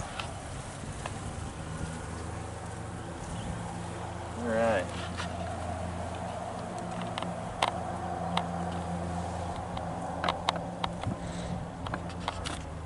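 Honey bees buzzing in a steady hum around an open hive, with a short louder falling tone about four and a half seconds in. A few light knocks of wooden hive boxes and frames being handled come in the second half.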